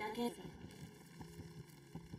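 Faint subtitled anime dialogue playing at low volume, a short spoken line near the start, then a quiet stretch.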